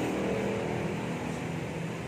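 Steady mechanical rumble with a low hum, easing slightly toward the end.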